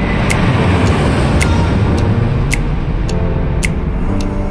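Loud jet airliner engine noise as the plane passes low overhead on landing approach. Background music with a sharp beat about once a second plays underneath.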